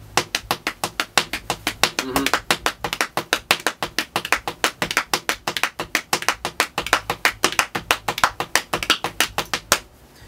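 Hands slapping on the thighs in a fast, steady rhythm, tapping out a gospel drum groove.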